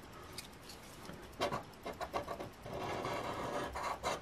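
Scratch-off lottery ticket being scratched with a small hand-held scratching tool: a few separate scrapes about a second and a half in, then a fast run of rubbing strokes across the coating.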